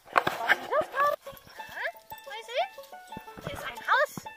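A Dalmatian whining in a series of short, rising high-pitched cries, over scattered clicks and rustling.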